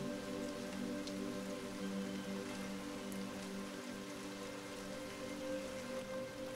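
Steady rain sound with a soft, held ambient music drone beneath it.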